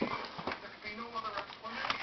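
Soft, indistinct voice sounds with a few light, sharp clicks of a plastic toy being handled.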